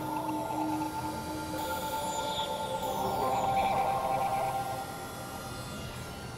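Experimental electronic drone music: layered synthesizer tones held steady, with a wavering, warbling swell that is loudest about three to four seconds in, and a high falling sweep about two seconds in.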